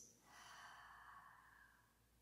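A woman's faint, soft breath out, lasting about a second and a half and slowly fading.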